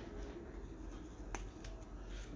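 Faint handling sounds as gold jewellery is fitted onto a card display: one sharp click about a second and a half in, then two lighter ticks.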